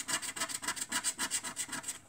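A scratchcard's latex coating being scratched off in quick back-and-forth strokes, about ten a second, a steady rasping scrape that stops at the end.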